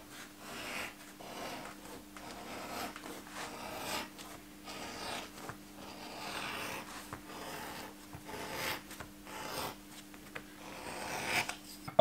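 Leather edge beveler shaving the edge of a leather strap, in repeated short scraping strokes about once a second.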